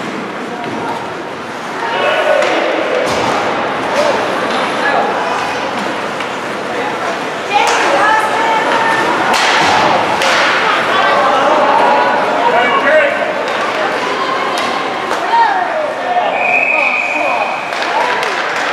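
Ice hockey game in an indoor rink: shouting voices of players and spectators, with sticks and puck striking the ice and boards in sharp knocks. A short high whistle sounds for about a second near the end.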